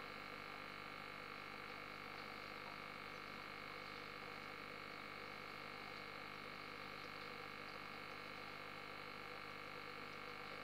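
Faint steady hum and buzz of running aquarium equipment, unchanging throughout.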